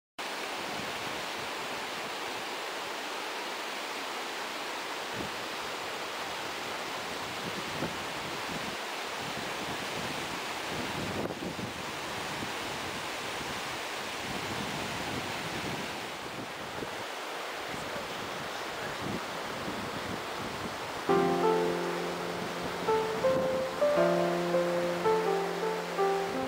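Mountain stream rushing over rocks, a steady hiss of running water. About 21 seconds in, music with held keyboard-like notes starts and becomes the loudest sound.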